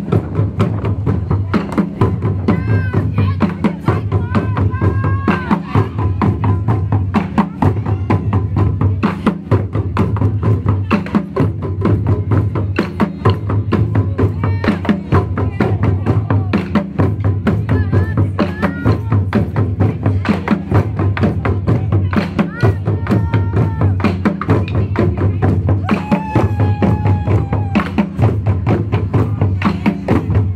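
Ensemble of Japanese taiko barrel drums on stands, beaten with wooden sticks in a fast, driving rhythm, with a deep beat pulsing about once a second, played to cheer on passing runners.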